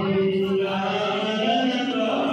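Men's voices chanting together in long, held devotional tones, the pitch stepping up about one and a half seconds in, over the low murmur of a packed crowd.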